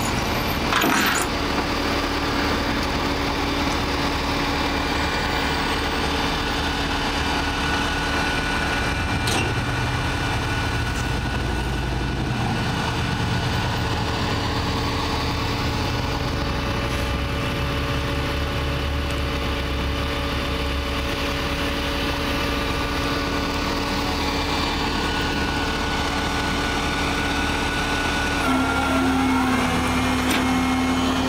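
Flatbed tow truck's engine idling steadily, a constant low hum that shifts slightly in pitch near the end.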